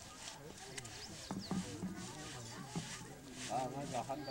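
Several people talking quietly in the background, with a few soft clicks and a couple of brief high chirps just over a second in.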